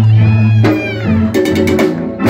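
Live Latin rock band playing with electric bass, electric guitar and keyboard: a lead note bends up and down over a held bass note. A quick series of sharp percussive hits comes about a second and a half in.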